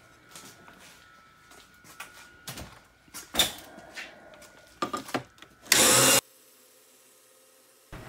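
Scattered knocks and rustles of handling over a faint steady whine, then a loud half-second burst of noise about six seconds in, after which it goes almost quiet.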